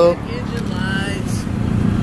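A car engine running at idle: a steady low rumble, with faint voices in the background.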